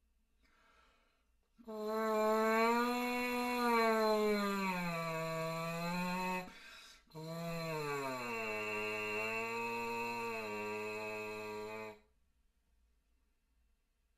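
French horn mouthpiece buzzed with the lips as an easy warm-up: two long buzzed tones separated by a short break. The first bends slightly up and then slides down; the second starts lower, slides further down and holds a steady low pitch before it stops.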